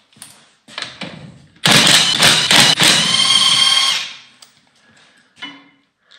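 Cordless power tool run in one burst of about two seconds, spinning a wheel nut off the race car's hub to take the wheel off.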